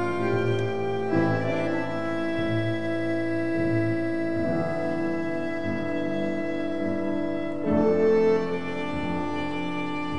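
A tango ensemble of violin, bandoneon, piano and double bass playing a slow piece, with long held chords that change every few seconds and swell louder near the end.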